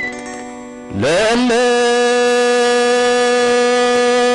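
A man singing one long held note, sliding up into it about a second in, over the plucked strings of a krar, the Eritrean bowl lyre.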